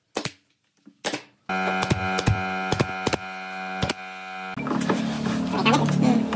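Pneumatic nail gun firing into pine strips: two sharp shots in the first second and a half. After that a steady sound of held tones comes in, with a few more clicks over it.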